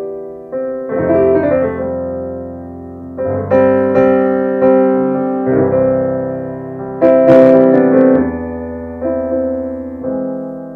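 Yamaha AvantGrand N1X hybrid digital piano, with its stringless grand-piano action and speakers, playing a slow passage of chords, each struck and left to ring and fade. The loudest and brightest chord comes about seven seconds in.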